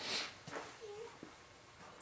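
Faint handling noises: a short hiss at the start, then a couple of light clicks and a brief small squeak.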